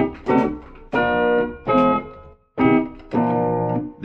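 Keyboard playing unconventional, non-tonal music: two long held chords, each about a second and a half, after a few shorter notes.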